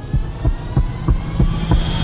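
Helicopter rotors beating at about five thumps a second, with a rising whine building over them.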